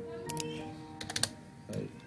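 Typing on a computer keyboard: a few quick keystrokes about a third of a second in, then a short run of keystrokes around a second in.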